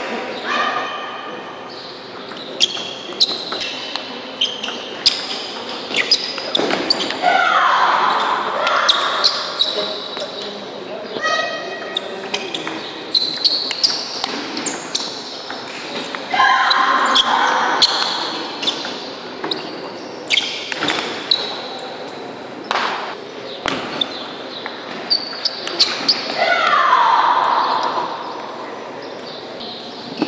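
Table tennis rallies: the ball clicking sharply off the paddles and the table in quick, irregular runs, echoing in a large sports hall.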